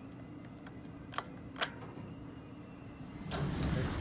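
Vintage Otis hydraulic elevator answering a hall call: two sharp clicks a little over a second in, then the doors sliding open with a rising rumble near the end, over a steady low hum.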